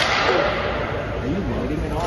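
A sharp knock right at the start, then a scraping hiss that fades over about a second, with muffled voices behind it.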